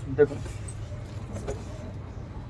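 Faint rustling of cloth as an embroidered kameez is unfolded and lifted up, with a few light ticks, over a steady low background hum.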